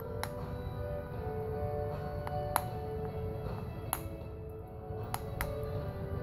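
Sharp clicks of small flakes snapping off a stone blade's pommel under a hand-held flaking punch, about five at irregular intervals, two of them louder in the middle. Faint background music with sustained tones runs underneath.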